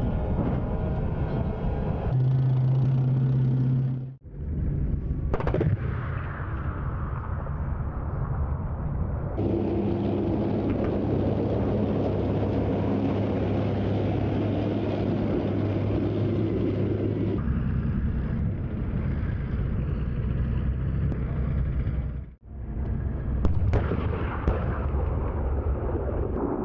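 Armoured vehicle sound in several short cuts: tank engines running with a steady low hum. A loud shot comes about five seconds in, and another gunfire burst comes near the end.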